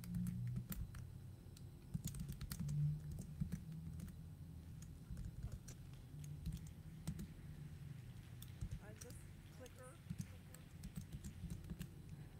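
Faint, irregular clicks and knocks from footsteps and handling noise on a stage, over a low murmur, with faint voices about nine seconds in.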